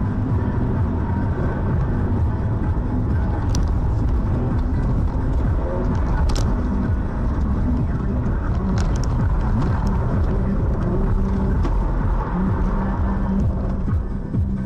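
Steady road and engine noise inside a moving car, picked up by a dashcam, with a few sharp clicks about 3.5, 6 and 9 seconds in.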